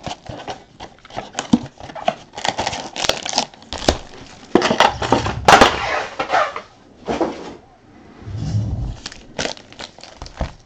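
Trading card pack wrappers being torn open and crinkled, with short clicks and rustles of cards being handled in between; the longest stretch of tearing and crinkling comes about halfway through.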